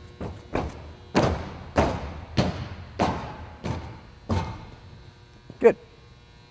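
An athlete's feet striking a running track in a series of about eight heavy footfalls, roughly one every half second or so: the approach steps and alternate-leg bounds of a triple-jump bounding drill.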